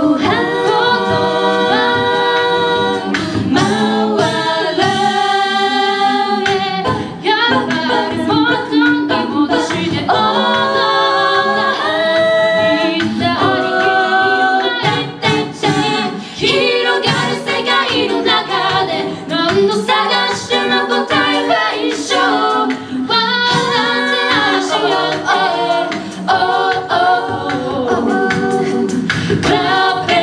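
A six-voice female a cappella group singing into microphones, several voices sounding together without instruments.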